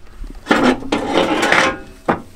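A 1992 Prowler travel trailer's manual fold-out entry step being pulled out: a metal scraping slide that starts about half a second in and lasts a little over a second.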